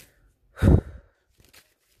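A woman sighs once about half a second in: a short, loud, voiced breath out, falling in pitch, that carries the start of a spoken 'all right'.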